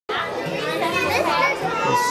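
Many children's voices talking and calling out at once: the busy din of a school cafeteria full of kids.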